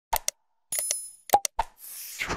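Button-click sound effects and a short bell ding from a like-and-subscribe animation: two quick clicks, then a ringing bell chime, then two more clicks, and a rushing noise begins near the end.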